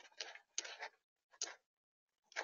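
Gray squirrel feeding in a tray of mixed nuts and seeds right at the microphone: four short crunching, rummaging sounds within about a second and a half.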